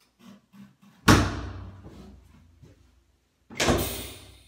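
Chiropractic drop table: the drop section gives way under the chiropractor's thrust during a drop adjustment for a pelvic misalignment. There are two loud clacks about two and a half seconds apart, each ringing on briefly.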